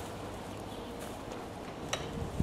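Quiet outdoor background with a faint steady hum, broken by one short click near the end.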